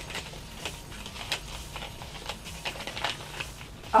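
Paper envelope rustling and crinkling in the hands as it is worked open, a run of small irregular crackles.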